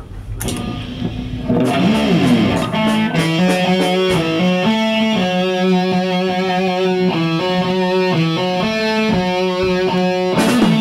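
Distorted heavy-metal electric guitar. It swells in over the first second and a half, then plays a lead line of held notes that step up and down in pitch.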